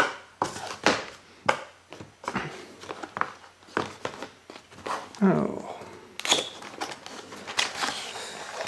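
Small brown cardboard box handled and opened by hand: a string of short scrapes, taps and rustles as the lid flap is worked open.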